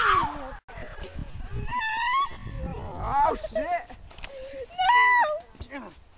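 A woman's high-pitched shrieks while she is grabbed and pulled down in the snow: two held shrieks, one about two seconds in and a longer one near the end, with shorter wavering cries between.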